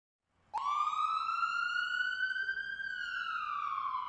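A siren-like sound effect: one wailing tone that starts with a click about half a second in, rises slowly in pitch for about two seconds, then falls.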